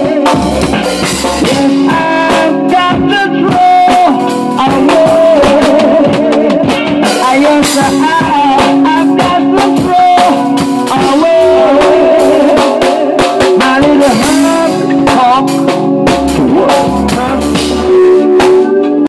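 Reggae music: a drum kit played with sticks to a steady reggae beat, with guitar and a melody line over it.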